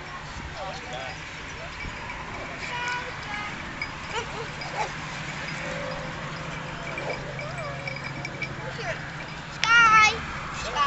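Huskies playing off-leash, giving scattered yips and barks over the background chatter of people, with a loud, high-pitched yelp near the end.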